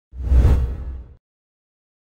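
A single whoosh sound effect with a deep low boom under it, swelling quickly and fading out just over a second in.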